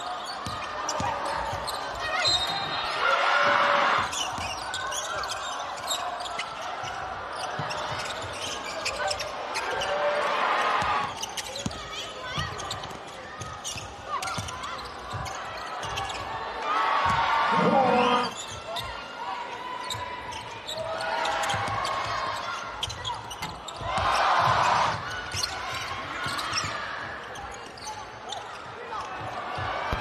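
Live basketball game sound in an indoor arena: a ball dribbled and bouncing on the hardwood court, with a crowd's voices that swell loudly four times.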